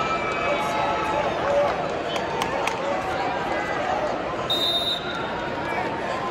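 Arena crowd noise: many voices talking and shouting at once, with a few sharp knocks a couple of seconds in and a short high tone about four and a half seconds in.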